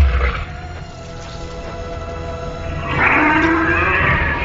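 Sustained dramatic film score with a heavy low boom at the very start. About three seconds in, a monster's loud roar swells up over the music.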